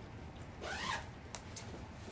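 Zipper on a quilted fabric duffel bag being pulled, a short rasp falling in pitch about a second in, followed by a couple of faint ticks.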